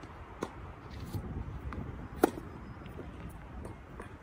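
Tennis rally: racquets striking a tennis ball on an outdoor hard court, with one sharp close hit about two seconds in and fainter hits and bounces around it, over a steady background hum.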